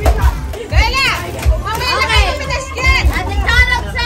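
Excited children shouting and squealing over background music.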